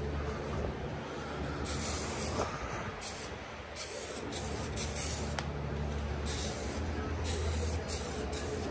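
Aerosol can of adhesion promoter sprayed in short bursts, about six hisses of a second or less each, over a steady low hum.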